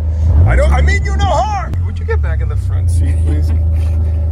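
Ranch utility vehicle's engine running with a steady low drone as it drives. A person's voice calls out in rising and falling cries about half a second in, lasting just over a second.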